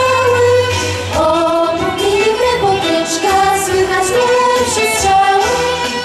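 A girls' vocal group singing a Polish legionary song into microphones over instrumental accompaniment with a low bass line.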